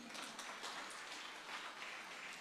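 Faint audience applause, a haze of many small claps.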